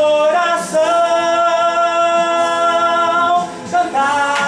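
A man singing a Portuguese worship song, holding one long note for about three seconds, with a brief break and a new note near the end.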